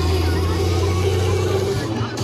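Live electronic dance music over a festival sound system: a held deep bass tone under a crowd shouting and cheering, the bass cutting out near the end.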